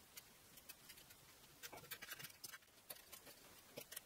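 Near silence with faint, scattered small clicks that come more often from about one and a half seconds in: metal nuts being turned by hand onto the threaded rods of a two-tier wire shelf rack.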